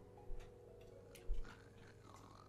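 A few quiet, unevenly spaced ticks over a faint, steady held note.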